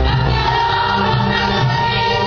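Live orchestra with strings playing sustained chords. A low bass note breaks off at the start and a higher held note comes in about half a second later.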